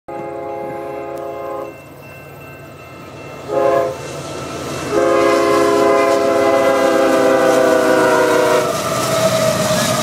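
Horn of the Canadian Pacific lead locomotive CP 8758, a GE ES44AC diesel, sounding for the grade crossing: a long blast that stops about 1.7 s in, a short blast about three and a half seconds in, then a long blast of nearly four seconds. The diesel rumble of the approaching train grows louder underneath, and the locomotives pass close by near the end.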